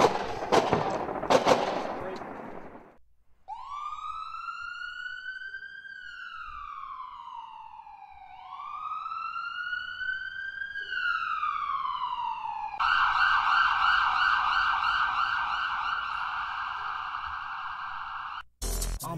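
A few sharp cracks over a burst of noise in the first three seconds. Then an emergency-vehicle siren makes two slow wails, each rising and then falling in pitch, and about two-thirds of the way through switches to a fast warble that runs until near the end.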